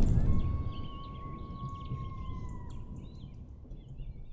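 Birds chirping over a low rumbling background, with one long steady whistled tone that stops about two and a half seconds in.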